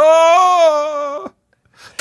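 A man's voice making one long held effort noise for about a second, a slightly falling note, as if straining to pull something out. It cuts off about two-thirds of the way in.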